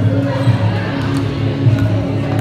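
Several basketballs bouncing on a hardwood gym floor as players dribble, an irregular run of thumps.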